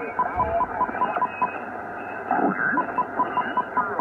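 Shortwave receiver audio on the 40-meter band in lower sideband, being tuned slowly across the dial: garbled, off-tune signals and whistles over a narrow, tinny hiss. Through it runs a short high beep repeating about five times a second, which pauses in the middle and then returns.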